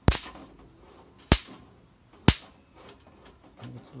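Electric mosquito-zapper racket's high-voltage grid sparking: three sharp cracks about a second apart.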